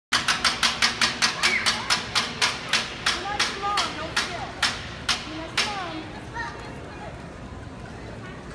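Sharp drum-stick hits from a samba percussion group, quick and even at first, then slowing and fading out over about five seconds, with voices calling out among them.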